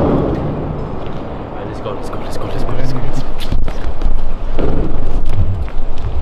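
Indistinct voices, then loud rumbling and a rapid scatter of knocks and clicks from about two seconds in: handling noise from a handheld camera carried on the move.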